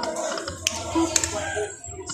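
Poker machine being played: two sharp clicks about half a second apart, from the spin buttons or reel stops, over the machine's electronic tones and background chatter.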